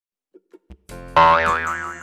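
Cartoon boing sound effect over a children's song backing track, coming in about a second in: a loud tone that leaps up in pitch and wobbles as it fades.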